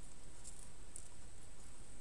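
Faint rustling and a few soft clicks of a thin LED light wire and its clear plastic packaging being handled by fingers, over a steady background hiss.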